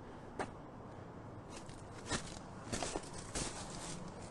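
A few faint knocks or taps over a steady hiss: one about half a second in, one at about two seconds, then a quick cluster and a last one in the second half.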